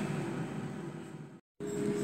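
Farberware 3-litre air fryer's fan running, a steady whir that fades away, drops out in a moment of dead silence at an edit about one and a half seconds in, then comes back with a steady hum.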